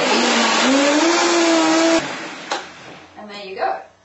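Vitamix blender motor running and whirring through hot roasted tomato soup, its pitch rising about half a second in as the speed is turned up. It cuts off suddenly about two seconds in.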